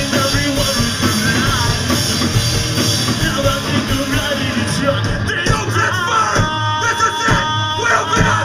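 A pop-punk band playing live: electric guitar, bass and drums with the singer's voice over them, and a steady held note near the end.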